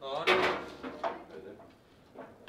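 Foosball table in play: the ball and the rod men clacking against the table, with one sharp knock about a third of a second in followed by lighter clicks.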